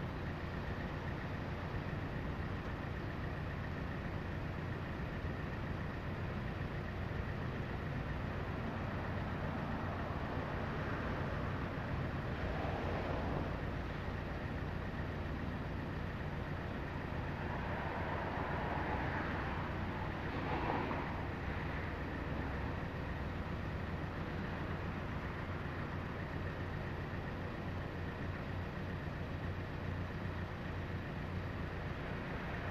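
A steady mechanical hum under an even rushing noise, swelling briefly twice about halfway through.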